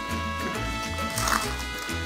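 Upbeat Latin-style background music with a repeating bass line.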